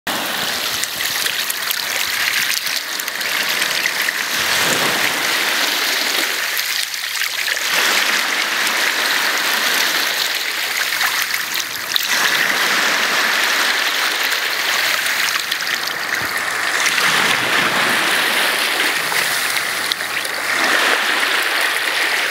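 Small waves of the St. Lawrence washing up and back on a beach, a steady rushing hiss of water that swells in surges every five or six seconds.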